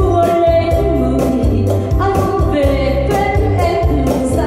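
A woman singing a sustained melody with vibrato into a microphone, backed by electronic keyboard and percussion keeping a steady beat.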